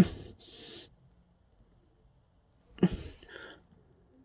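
Hands handling a plastic action figure: a sharp click followed by a soft, brief hiss, then the same again about three seconds later.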